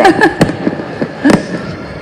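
Two sharp pops about a second apart, over low background noise.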